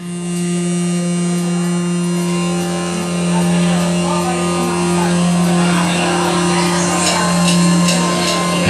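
A live rock band opens a song with one low note held steadily like a drone, starting abruptly, with fainter guitar notes shifting above it. Cymbal strikes come in near the end.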